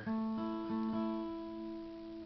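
Steel-string acoustic guitar with phosphor bronze strings, picked with a flatpick: a few single notes within the first second sound the interval of a fifth, A and E. The notes ring on together and fade.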